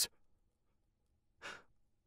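A pause in a man's reading: near silence, then one short, soft intake of breath about one and a half seconds in, just before he goes on speaking.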